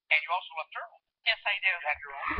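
Speech only: a person talking in short phrases.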